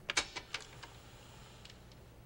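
A quick run of light, sharp clicks in the first second, then two fainter clicks near the end, over quiet room tone.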